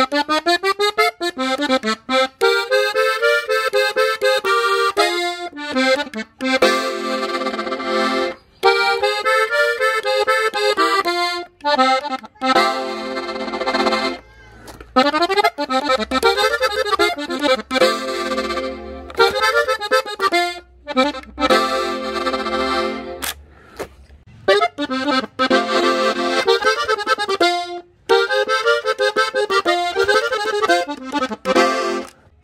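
Gabbanelli button accordion in F playing a short ornament (adorno) phrase again and again: quick runs of notes that rise and fall, each phrase broken off by a brief pause before the next.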